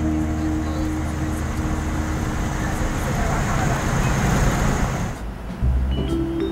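Road noise inside a moving car's cabin: a steady rumble and hiss of tyres and engine at highway speed. It cuts off about five seconds in, and music starts just after.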